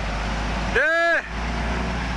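Shacman X3000 tractor unit's diesel engine running under load as it pulls a container trailer round a turn. An electronic warning tone, a short beep that rises and then falls in pitch, sounds once near the middle and is the loudest thing heard.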